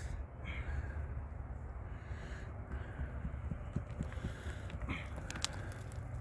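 Faint clicks and knocks of loose rock and stone being shifted by hand, over a low steady rumble.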